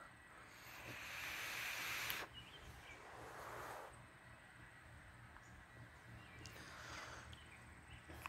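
A drag on a vape: a soft hiss of air drawn through the device for about two seconds that cuts off sharply, then a softer breathy exhale about a second later and a fainter breath near the end.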